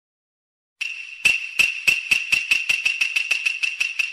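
Intro sound effect: silence, then a high ringing tone starts about a second in, struck by sharp ticks that come faster and faster and grow softer toward the end.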